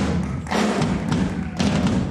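Jazz drum kit playing a solo: several heavy, unevenly spaced hits with a strong low thud.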